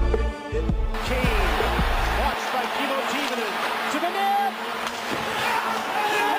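Hip-hop beat with a heavy bass rhythm that cuts out about two seconds in, leaving hockey broadcast game audio: steady arena crowd noise with short squeaks.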